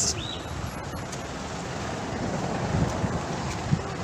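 Wind blowing across the microphone: a steady rushing noise.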